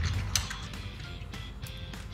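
Yellow snap-off utility knife having its blade slid out with the thumb slider, giving a run of small ratcheting clicks, one sharper click about a third of a second in.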